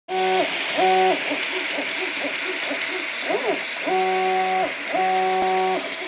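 3D printer at work: its stepper motors whine at a steady pitch during each move, the pitch sliding up as a move starts and down as it stops, with a quick rising-and-falling glide midway on a short move. Under it runs a steady hiss from the cooling fans.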